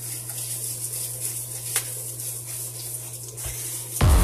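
Steady low hum under an even hiss, with one faint click a little under two seconds in.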